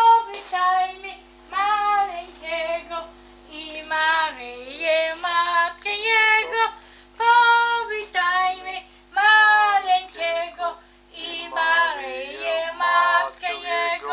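A high, child's voice singing a melody in short phrases over steady held accompaniment notes, cutting off abruptly at the end.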